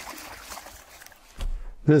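Water splashing as dogs run through a shallow creek, a steady hiss of spray. A low thud comes near the end.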